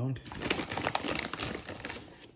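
Rapid crinkling and clicking of wrapped Starburst candies being handled in their plastic packaging, a dense run of small taps and rustles.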